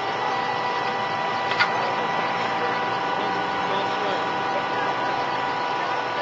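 An engine idling with a steady drone and a sharp click about a second and a half in, with faint voices in the background.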